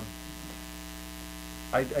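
Steady low electrical mains hum, several constant tones with no change, heard through a pause in talk until a voice starts again near the end.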